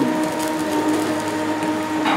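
Dough balls deep-frying in hot oil in a cast-iron pan, a steady sizzle with faint crackles, over a steady low hum.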